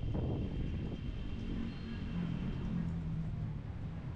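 Street ambience: a steady low rumble of traffic, with wind buffeting the microphone in the first moments and a faint engine-like drone in the second half.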